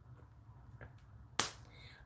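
A single sharp snap or click about one and a half seconds in, over faint low room hum.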